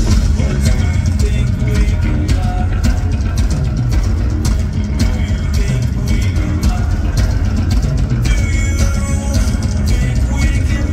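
Nu-metal band playing live and loud: distorted electric guitar, bass guitar and a drum kit with steady hits, heard from within the crowd.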